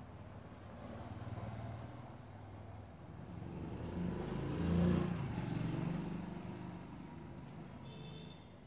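A motor vehicle's engine passing by, swelling to its loudest about five seconds in and then fading away.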